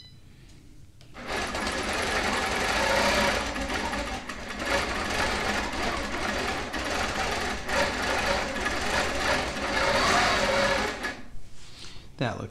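Longarm quilting machine stitching a test run in metallic thread, starting about a second in and stopping shortly before the end. The top-thread tension has just been turned up to tighten the stitch.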